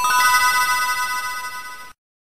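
A bright bell-like chime sound effect struck once, with a few higher tones joining a moment after the first, ringing and slowly fading over about two seconds before cutting off.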